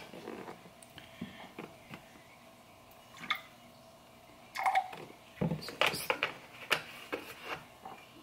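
Light kitchen handling sounds of a glass, a plastic straw and a half-and-half carton on a granite counter: a few faint clicks, then from about halfway through a run of sharp little knocks and clinks as the carton is set down and the glass is stirred.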